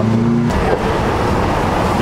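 Street traffic: a motor vehicle running close by, a steady rush of engine and road noise that sets in abruptly about half a second in.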